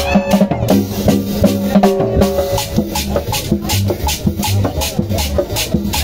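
Live cumbia band playing loud, with an even percussion beat of drums and hand percussion over held bass and horn notes.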